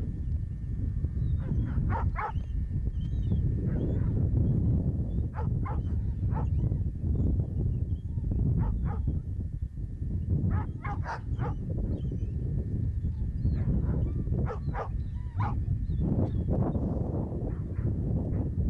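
Dogs barking in short, repeated calls that come in clusters every few seconds, over a steady low rumble of wind on the microphone.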